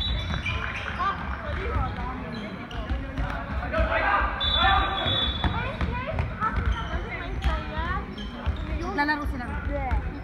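Basketball game in a sports hall: the ball bouncing on the wooden court and sneakers squeaking, under voices of players and spectators calling out.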